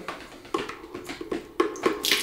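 A handful of short, light knocks and small water sounds as a water-filled plastic bottle is lowered into a plastic tub of water.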